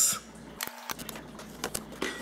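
Faint scratching and a few light clicks from a metal fork scoring an X through the plastic film over a mushroom grow kit's substrate block.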